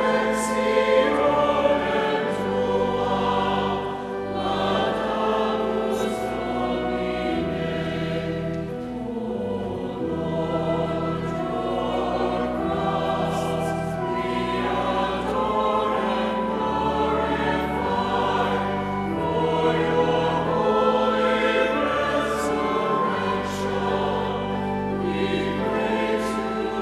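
Church choir singing a slow hymn, the voices holding long notes over sustained low accompanying notes that shift in steps.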